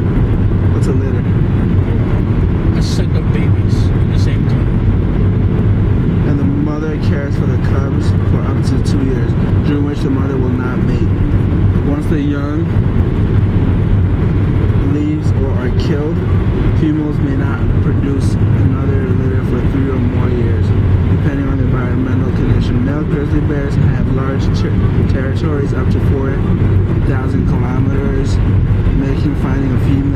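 Steady road and engine noise of a car driving at speed, heard from inside the cabin as a continuous low rumble.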